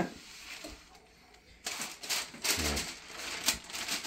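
A large sheet of parchment paper rustling and crackling as it is handled, starting after about a second and a half.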